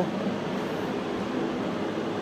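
Steady background hum and hiss of workshop room noise, with no distinct events.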